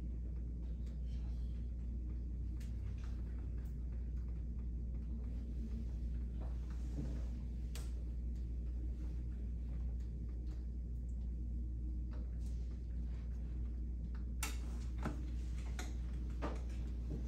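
Quiet room tone: a steady low hum with a few faint scattered clicks, the sharpest one near the end.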